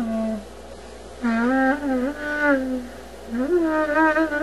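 Greek-style clarinet (klarino) playing short melodic phrases, with pitch slides and bends between notes. A held note ends about half a second in, a bending phrase follows after a short gap, and a new phrase starts near the end with an upward slide.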